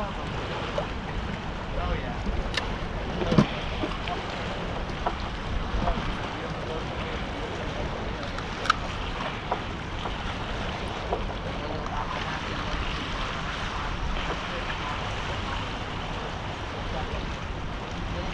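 Steady wind buffeting the microphone over the sound of sea water below, with a few sharp clicks, the loudest about three seconds in.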